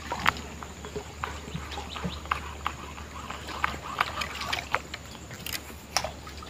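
Small wooden canoe being paddled on a river: irregular light splashes and knocks from the paddle and hull, with water dripping, over a steady faint high hum.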